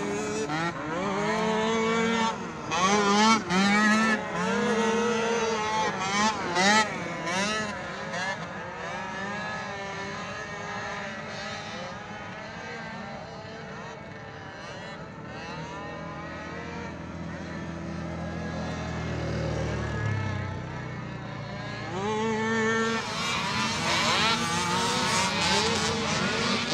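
Small youth racing quad engines revving up and down as the throttle is worked, the pitch rising and falling every second or so. About two-thirds of the way through, a deeper engine note climbs steadily, then drops away abruptly.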